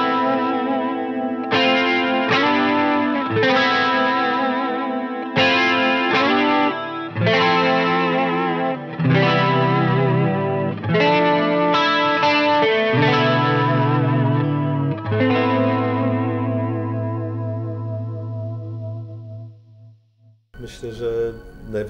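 Electric guitar on a clean tone with a little reverb and no delay, playing a series of ringing chords. The last chord is held and fades out near the end.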